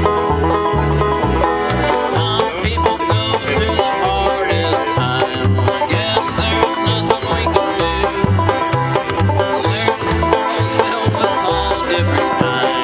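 Bluegrass-style instrumental played live on a five-string banjo, piano accordion and upright bass: fast plucked banjo rolls over held accordion notes, with the bass plucking a steady pulse of about two notes a second.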